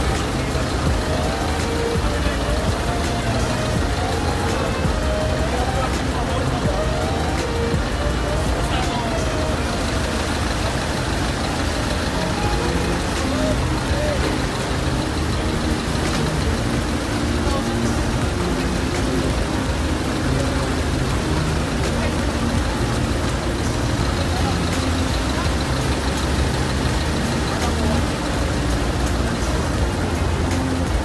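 Street noise at a large fire: a steady low rumble of vehicle engines with indistinct voices, and a tone that wavers up and down over the first ten seconds or so.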